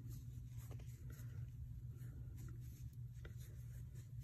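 Faint rustling and light scratching of yarn being worked on a crochet hook, with small ticks as the hook catches and pulls yarn through the loops, over a steady low hum.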